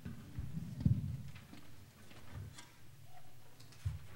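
A quiet pause in a concert hall before a piece begins: scattered small clicks and rustles from players and audience settling, with a low thump about a second in.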